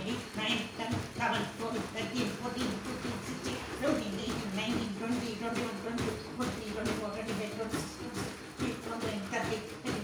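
Grape juice sloshing inside a 5-litre plastic jerry can being shaken quickly up and down, a rhythmic slosh and knock with every stroke, while a man counts the strokes aloud. The shaking mixes an added grape fermenter evenly through the juice.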